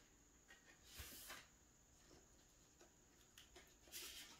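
Near silence with faint paper and disc handling: a short soft rustle about a second in, and a few light ticks near the end as a DVD is slid out of its paper sleeve in a photobook.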